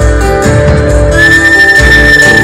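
Loud live rock band music with drums and a heavy low end. A little over a second in, a single high note comes in and holds steady.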